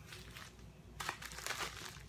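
Packaging being handled, rustling in irregular rough scrapes, louder from about a second in.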